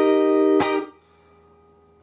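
An E-flat chord strummed on a Stratocaster-style electric guitar rings out steadily, then stops with a click just over half a second in.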